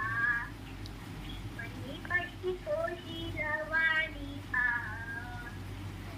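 A young boy singing a song in a high child's voice, in short phrases with a few held notes.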